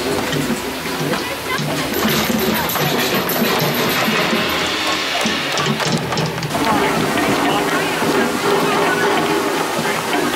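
Music, with a crowd's voices and chatter mixed in.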